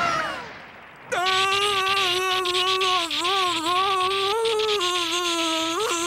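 A man's long cartoon scream, held on one wavering pitch for about five seconds. It starts about a second in, after the tail of splashing and shouting dies away.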